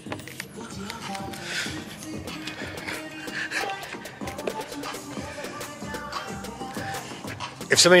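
Background music with short percussive hits and held tones.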